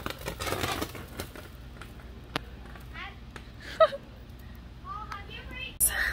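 Handheld firework hissing and crackling as it sprays sparks, loudest in the first second, with one sharp crack a little past halfway and brief voices of children and adults.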